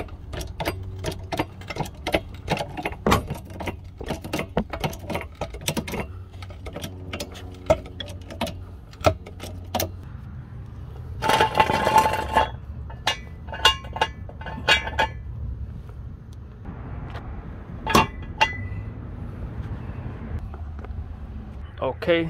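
Torin Big Red hydraulic trolley jack being pumped to lift a car, giving a run of quick metal clicks and clinks for about ten seconds. About eleven seconds in comes a louder, ringing metal rattle and scrape as a steel jack stand is set in place, followed by scattered clinks.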